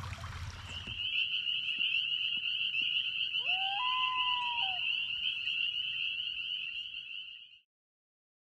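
A steady high-pitched chorus of calling frogs starts about a second in and cuts off suddenly near the end. Around the middle, one longer call glides up in pitch, holds, then falls away.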